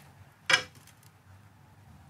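A heavy metal weight set down on the end of a thin clamped steel strip: a single sharp clack about half a second in.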